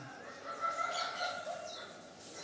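Birds chirping in the background, with one drawn-out note lasting about a second and a few short high calls.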